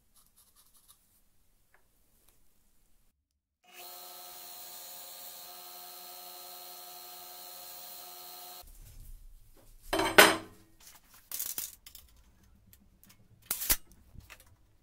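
Electric belt grinder: its motor runs steadily with a hum of several tones for a few seconds, then a steel workpiece is pressed against the belt in three short rasping grinding passes, the first about ten seconds in the loudest.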